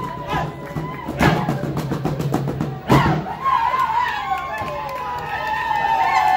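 Traditional dance music winding down, with sharp drum strikes, the loudest about three seconds in, then a voice over the sound system for the rest.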